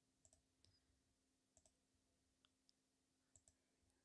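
Near silence, broken by a few faint, scattered clicks of a computer mouse and keyboard.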